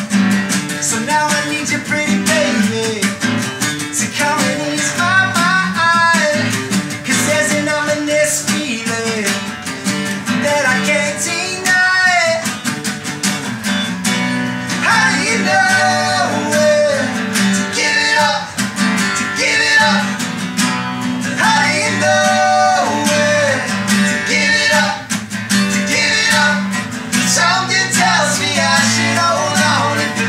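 Acoustic guitar strummed under a man's singing voice: a live acoustic song performance.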